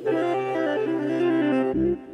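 Synthesized, reedy tones from the Vio vocoder-synth app on an iPad: a held low note under upper notes that step from pitch to pitch as a finger plays across the touchscreen, dying away shortly before the end.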